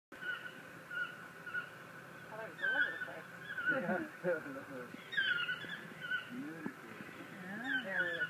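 A flock of yellow-throated toucans calling from a tree. Several birds give short calls again and again, overlapping one another, with clusters of calls about a second, three seconds and five seconds in.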